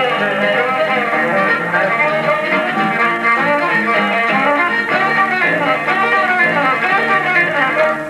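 A band playing a fiddle tune: a violin plays the lead over guitar accompaniment.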